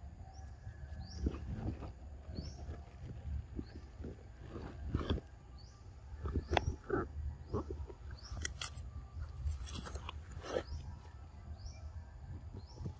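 Outdoor forest ambience: a short, high rising chirp from a small bird or insect repeats about every two-thirds of a second, over scattered crackling clicks and rustles that bunch up in the second half, with a low rumble underneath.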